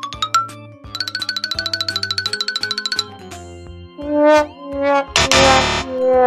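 Cartoon sound effects over children's background music: a rising slide-whistle-like glide, then a fast, even ticking run lasting about two seconds, then a few pitched boing-like sounds. Near the end comes a loud, harsh buzz, a wrong-answer buzzer that marks the wrong key.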